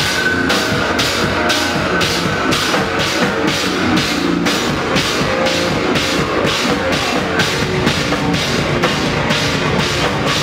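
Hardcore band playing live: loud distorted guitars and drum kit with a steady, driving beat of drum and cymbal hits, nearly three a second.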